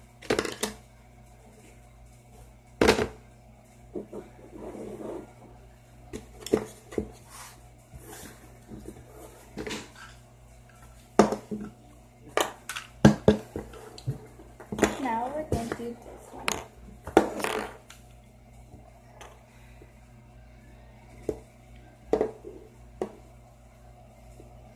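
Scattered clicks and knocks of hard plastic craft pieces and a 3D pen being handled and set down on a table, loudest in clusters about a third and two-thirds of the way through.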